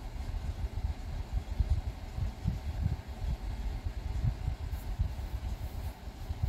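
Wooden spatula stirring and pressing crumbled ground pork in a nonstick pan, heard as irregular soft low thumps over a steady low rumble.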